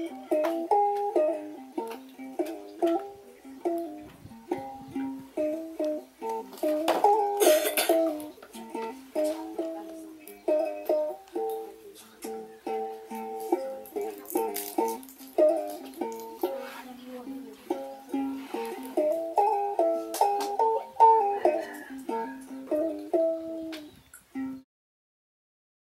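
A plucked string instrument playing a quick, busy melody of short ringing notes in a middle register, often two notes sounding together. A brief rustle cuts across it about seven seconds in.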